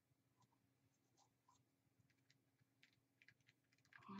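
Near silence, with faint scattered small ticks that come more often near the end, as glitter is shaken onto wet Mod Podge.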